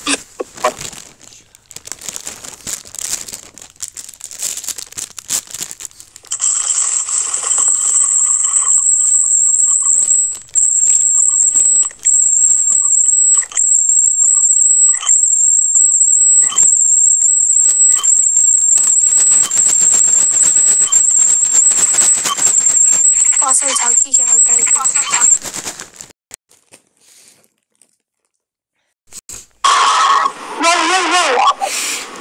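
A loud, steady, high-pitched whine starts about six seconds in and holds for nearly twenty seconds, wavering slightly, before it cuts off.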